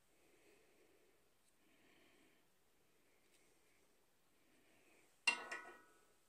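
A single sharp metallic clink about five seconds in that rings briefly at several pitches, as the steel spark plug fouler knocks against the catalytic converter's oxygen-sensor bung while it is being threaded in. Before it there is only faint, soft handling noise.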